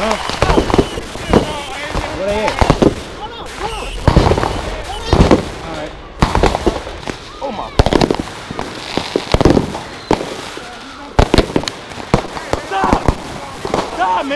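Fireworks fired at close range in a street: a string of sharp bangs and pops at irregular intervals, with crackling between them. Voices shout in between the shots.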